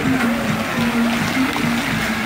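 Music playing for a musical fountain show, with a string of held low notes, over the steady hiss and splash of the fountain's water jets.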